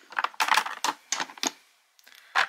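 Plastic and glass makeup bottles knocking and clicking against each other as they are handled in a packed storage box: a quick, irregular run of light clicks that dies away shortly before the end.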